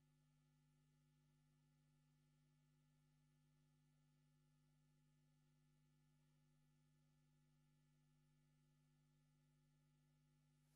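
Near silence: only a faint, steady hum.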